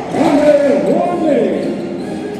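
A basketball dribbling on a hardwood court during live play, with several players' voices calling out over one another.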